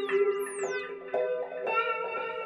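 Electric guitar played through an amplifier in an instrumental passage: one held note rings under a run of picked single notes that change about every half second.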